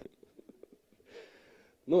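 A quiet pause in a man's talk over a microphone, with a faint hiss about a second in; he starts speaking again near the end.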